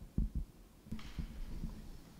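Handling noise on a handheld microphone: a few dull bumps, and a brief rustle of paper about a second in as a sheet is unfolded next to the mic.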